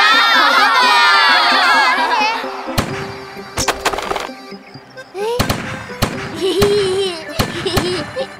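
Animated-cartoon sound effects over background music: a loud, high, wavering cry that slides downward, then a string of sharp gunshot bangs from about three seconds in, some close together.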